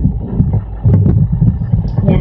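Low rumbling noise with a few sharp clicks, picked up by an open microphone on a video call.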